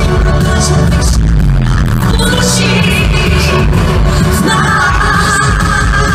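Loud live pop song over a concert PA, with a heavy steady bass and a woman's singing voice coming in near the end.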